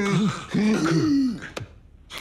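A man laughing in low, voiced chuckles that die away about a second and a half in, followed by a short click.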